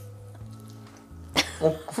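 Soft background music with low steady notes, then about a second and a half in a short cough, followed by a voice exclaiming "oh, god".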